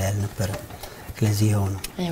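A man's low speaking voice with drawn-out, held syllables and a short pause in between.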